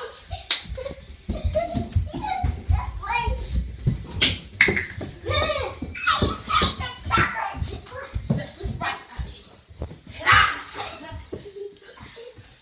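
Young children shouting and squealing as they race each other, with repeated thumps of running feet on the floor and stairs throughout.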